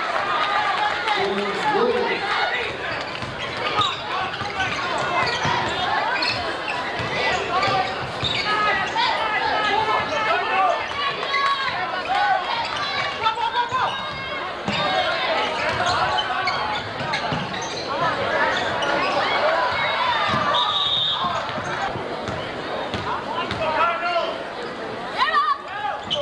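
Live basketball game sound in an echoing gym: the ball bouncing on the hardwood court, sneakers squeaking, and a steady din of crowd voices and shouts. Near the end a referee's whistle blows briefly, stopping play for a foul before a free throw.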